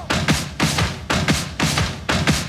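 Live hard rock band playing an instrumental stretch between sung lines: drums and electric guitars hitting together in a driving beat of about three accented hits a second.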